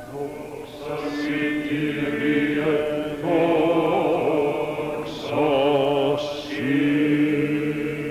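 Byzantine church chant sung by male chanters: a wavering melody line over a steadily held drone (the ison). It is the choir's sung response between the deacon's call to hear the Gospel and the Gospel reading.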